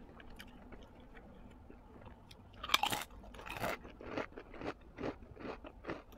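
Close-miked mouth sounds of someone eating spicy instant noodles and sausage. There is a short loud burst of mouth noise about two and a half seconds in, then steady wet chewing at about two chews a second.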